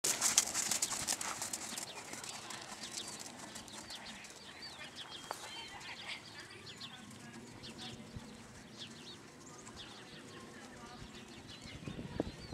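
A horse trotting on arena sand, with a quick run of close clicks in the first two seconds, and small birds chirping throughout.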